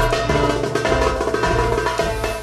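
Darbuka strokes played along with a dance-remix backing track of Arabic pop, with heavy bass and sustained melodic tones under quick, sharp drum hits.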